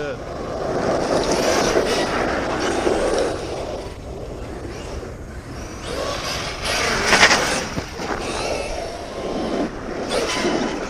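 A 1/5-scale ARRMA Kraton RC truck with a Hobbywing 5687 brushless motor driving on asphalt: a noisy rush of motor, drivetrain and tyres that surges louder twice, near the start and again past the middle.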